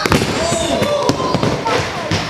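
A stunt scooter and its rider crashing onto a plywood ramp on a failed flair attempt: a sharp slam at the start, then a run of clattering knocks as the scooter and body hit the wood.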